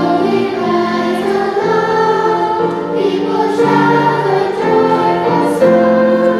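Children's choir singing a hymn in unison with piano accompaniment, moving through sustained notes that change every half second or so.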